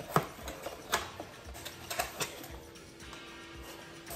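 A small cardboard box and its paper packaging being handled, giving a few sharp clicks and rustles, with music playing faintly in the background.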